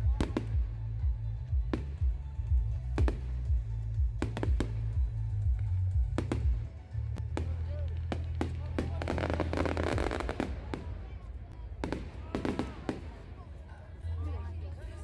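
Fireworks bursting overhead: sharp bangs and cracks at irregular intervals, with a cluster around the middle and another near the end. Music and voices sit underneath.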